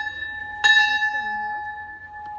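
Hanging brass temple bell rung by hand. The ring of one strike carries into the start, and a second strike comes about two-thirds of a second in. Each strike rings on clearly and fades slowly.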